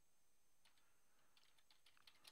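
Faint computer keyboard keystrokes, a few scattered soft clicks against near silence.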